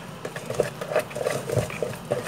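A spatula stirring thick cake batter in a bowl, a quick irregular run of wet squelches about six a second, with a dull knock a little past halfway. The milk has just gone in and is being worked into the flour until the batter comes together.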